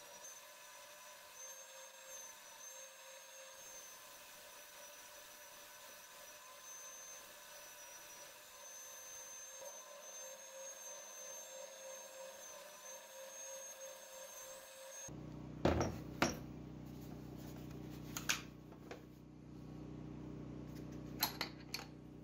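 Oscillating spindle sander running as a walnut piece is sanded against its drum, heard as a faint, steady whine with a high tone on top. About fifteen seconds in it gives way to a low hum and a few sharp clicks of steel Forstner bits being handled in their plastic case.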